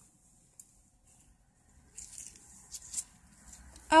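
Gloved hands handling pennies on a carpet: faint rustling of nitrile gloves with a few short, soft scuffs as coins are picked up and set down, the clearest about two and three seconds in.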